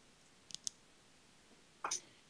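Two faint, sharp clicks about half a second in, then a brief, louder click or rustle just before the end, over a quiet open line.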